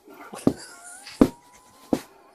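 Three sharp pops about two-thirds of a second apart as the buttons of a tight shirt burst open one after another over something inflating underneath, with a faint, thin, wavering squeal running beneath.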